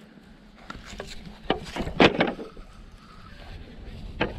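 Several separate hard knocks and clacks of a perforated plastic deck panel being handled and set onto a hopper ramp's frame, loudest about halfway through.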